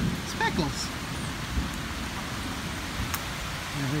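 Rain pouring steadily, with one short sharp click about three seconds in.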